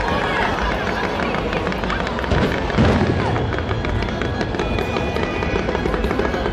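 Fireworks going off: a dense run of sharp pops and crackles from bursting shells, with two louder booms about two and a half to three seconds in.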